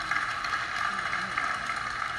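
Applause from an audience: a steady crackling patter of many hands, heard through an auditorium's speakers.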